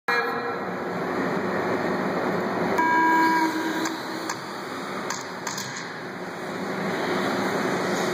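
1/10-scale electric 2wd RC buggies running on an indoor dirt track, a steady mix of motor whine and tyre noise. About three seconds in, a steady electronic tone sounds for about a second, typical of a race timing system's start tone.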